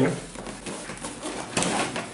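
Cardboard and paper packaging rustling and scraping as a camera is lifted out of its box, with a brief, sharper rustle about one and a half seconds in.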